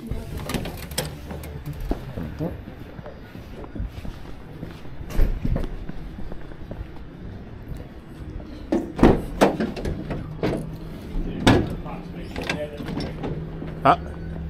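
A door swinging open, then footsteps and several sharp knocks and thuds outdoors, the loudest about nine and eleven and a half seconds in, over a low steady hum.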